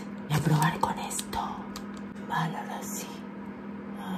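A woman's soft whispering in a few short murmurs, over a steady low hum.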